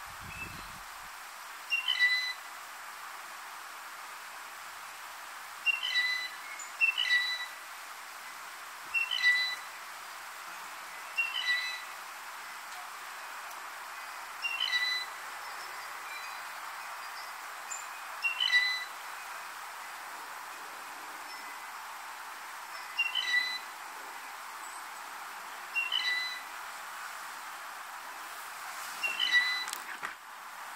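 Blue jay giving its squeaky-gate (rusty pump handle) call over and over, a short creaky squeak about every two to four seconds, about ten in all. A steady hiss runs behind the calls.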